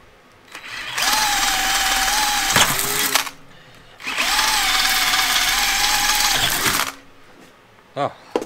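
Cordless drill with a sharp M8 bit opening up pre-drilled holes in a steel plate, run twice for about two and a half seconds each with a short pause between. Each time the motor whine rises briefly as it spins up and then holds steady while the bit cuts.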